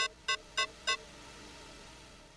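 A run of short electronic beeps, four in quick succession about a third of a second apart, then a faint hiss.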